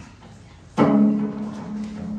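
Amplified electric guitar struck sharply a little under a second in, then a low note left ringing and sustaining.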